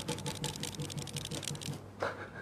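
A rapid, crackly run of sharp clicks and rustles while the knee is bent and worked by hand during a bone-setting check, ending just before the close.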